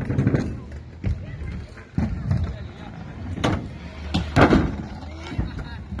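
Kick scooters rolling and landing on the skate ramps, with about five sharp knocks spread a second or so apart, over children's voices.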